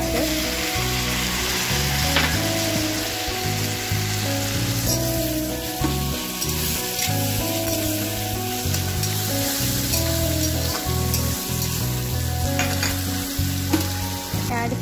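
Chopped tomatoes frying in hot butter and oil with browned onions in a kadhai, a steady sizzle as a spatula stirs them. Music plays underneath.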